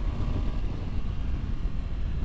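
Triumph Tiger motorcycle riding along at a steady pace: a continuous low rumble of wind on the microphone mixed with engine and road noise.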